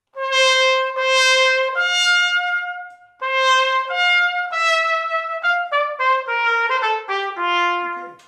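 Piccolo trumpet played solo: a held note rising a fourth, A to D, then the same two notes again after a short break, then a quicker descending run. The D sounds cleanly, played with the first valve slide pulled out a little to keep it from cracking.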